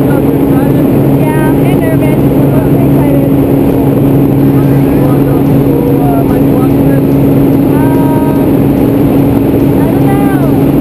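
Small propeller plane's engine, heard inside its cabin: a loud, steady drone that holds an even pitch, with faint voices talking under it.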